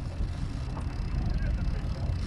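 Steady low rumble of a trolling boat's motor and wind, with a haze of water hiss over it.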